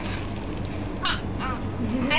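A young child's short, harsh shout about a second in, followed by a brief falling cry, over the steady background noise of a room.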